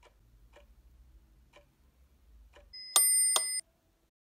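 Hanhart Chronotron Quartz desk stopwatch ticking faintly about once a second, followed about three-quarters of the way in by a loud, shrill electronic beep lasting under a second that cuts off suddenly.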